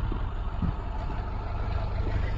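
A small city bus's engine running close by, a steady low rumble, with the even hiss of traffic on the slushy road behind it.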